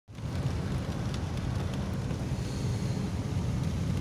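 Steady cabin noise of a car driving on a wet road in rain: a low rumble with an even hiss of tyres and rain over it.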